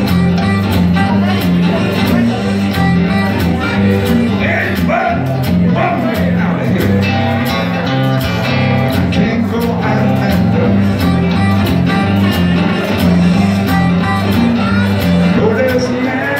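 Acoustic guitar played live, a repeating blues riff with a steady beat and a recurring bass line.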